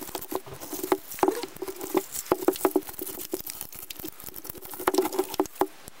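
Stiff synthetic broom bristles rustling and scratching as gloved hands bend and bind the bundles with wire, with many irregular sharp clicks.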